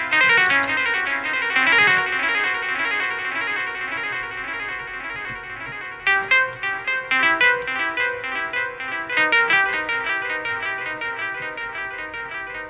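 Elektron Analog Four four-voice analog synthesizer playing a melodic pattern of short, plucky pitched notes, their tails smeared by delay and reverb. About six seconds in, a new run of sharp, rapidly repeating notes starts.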